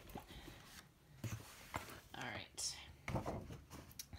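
Soft rustling and handling of shopping bags and packaging, in a few short brushing bursts.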